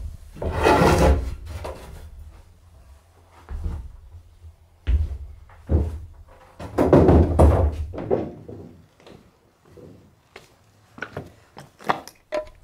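Large wooden panels being handled and shifted against a stone wall: irregular knocks and thuds, with two longer scraping stretches, one about a second in and one from about six to eight seconds in.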